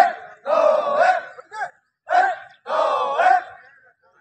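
Male voices shouting a rhythmic drill cadence while marching, in a repeating pattern of short and drawn-out calls about every second.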